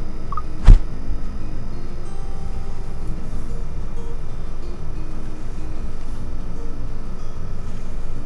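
A single sharp click or knock less than a second in, followed by a steady low hum with faint background music.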